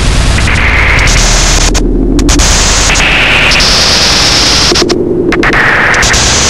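Loud, harsh analogue noise music: a dense wall of static hiss whose filtered bands shift up and down in pitch. Twice, about two seconds in and again near five seconds, the upper hiss drops out for about half a second, leaving a lower drone.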